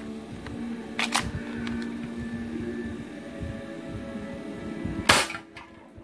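Spring-powered airsoft pistol fired once about five seconds in, a single sharp crack; the shot double-fed, sending two BBs out at once. A short click about a second in.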